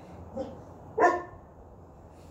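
One short, loud animal call about a second in, with a fainter, shorter call just before it.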